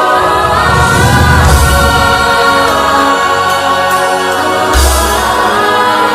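Choral music: a choir holding long sustained chords, with deep low swells about a second in and again near the end.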